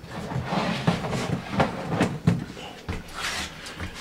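Irregular knocks, scrapes and rustles of a lid being lifted off a homemade aeroponic container.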